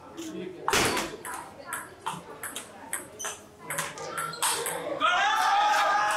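Table tennis rally: the celluloid ball clicks off the rackets and the table about two to three times a second. Near the end the rally stops and voices break out as the point ends.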